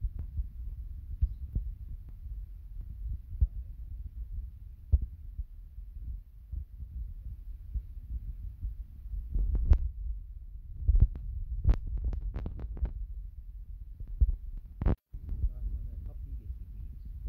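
Handling noise from a smartphone picked up by its own microphone: a steady low rumble with scattered soft thumps and clicks as the screen is tapped and the phone is held, with a flurry of taps a little past the middle.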